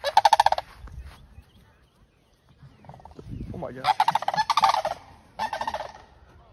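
Sandhill cranes calling with loud, rattling bugles: one right at the start, a longer one about four seconds in and a short one just before the end.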